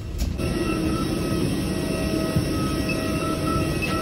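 Steady mechanical drone with several high, even whining tones, the machinery noise at the door of a parked airliner.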